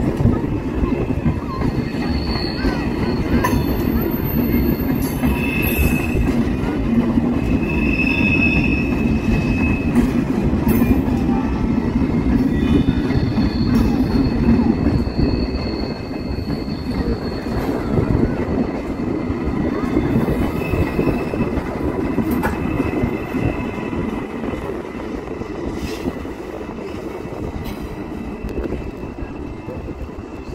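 An ICE high-speed train rolling slowly over the station tracks, with a steady rumble of wheels on rail. Thin high wheel squeals come and go throughout. The rumble eases off over the last few seconds as the train moves away.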